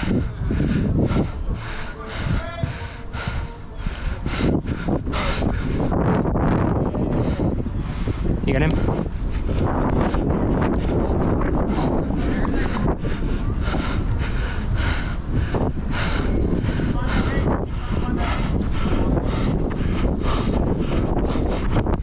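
Continuous low rumble of wind and movement on a body-worn camera's microphone as the wearer runs on artificial turf, with a steady run of footfalls about two a second through the second half.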